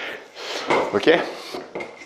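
A man says "ok" after a breath, with light metallic clinks from the TRX suspension strap's buckles as he handles the straps.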